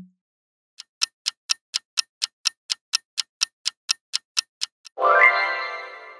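Clock-ticking countdown sound effect, about four ticks a second, then a bright ringing reveal chime near the end that fades out.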